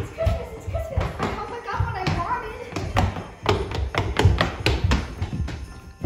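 Several people's footsteps thudding quickly down wooden stairs, a rapid uneven run of knocks throughout, with voices calling out in the first two seconds or so.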